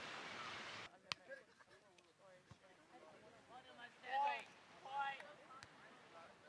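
Surf and wind on an open beach for about the first second, cut off abruptly, followed by a sharp click. Then faint, distant voices of a group of people calling out, loudest in two calls about four and five seconds in.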